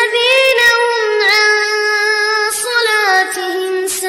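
A child's high voice reciting the Quran in melodic murottal style, holding long drawn-out notes with small ornamental turns in pitch.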